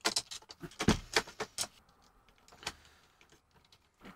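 Small metal M3 bolts and nuts clicking and rattling against clear acrylic frame plates as they are fitted by hand: a quick run of clicks in the first second and a half, then one more click a little later.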